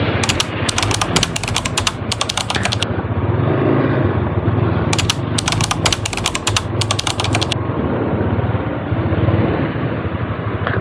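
Motorcycle engine idling with a steady low pulse, overlaid by two spells of fast, rattling clicks: the first from just after the start to about three seconds in, the second from about five to seven and a half seconds.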